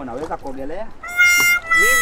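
A man's voice, then from about a second in a loud, steady, high held note with many overtones. Near the end a gliding voice-like pitch falls beneath it.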